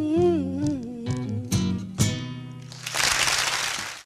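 A woman singing the closing note of a folk song with a wavering vibrato over acoustic guitar, followed by a couple of strummed chords. About three seconds in, audience applause comes in.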